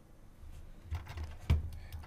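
A few faint, short computer mouse clicks over quiet room tone, about a second in and again around a second and a half in.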